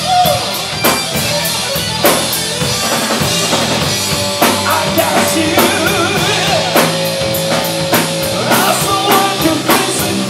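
Live rock band playing at full volume: drum kit, electric bass and electric guitar, with held guitar notes and regular drum hits.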